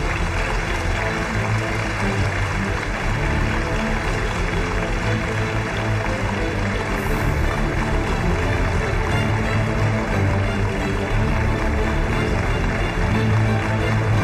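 Music plays steadily and loudly throughout, with a strong low pulse under a dense, bright upper layer.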